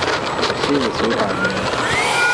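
Freewing F-18's 90 mm electric ducted fan whining as the model jet taxis on the runway. The pitch drops just after the start and rises again near the end as the throttle is worked.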